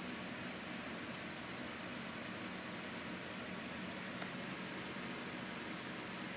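Steady, even hiss of road and running noise inside a moving car's cabin, with a faint low hum underneath.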